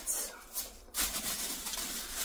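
Rustling of a shopping bag as it is rummaged through, picking up about a second in.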